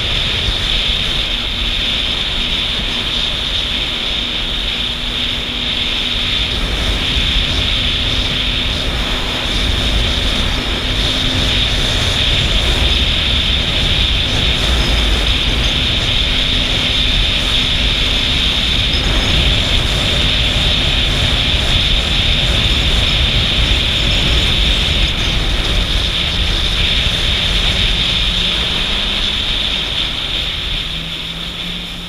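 Jet ski running at speed on open water: a steady engine drone under wind rushing over the microphone and water hiss from the hull, the engine note shifting near the end.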